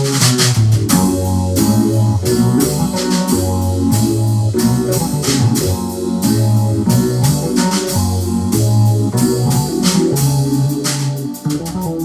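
Instrumental jam of a drum kit and an electronic keyboard: a low bass line moving every second or so under keyboard chords, with steady drum and cymbal strokes.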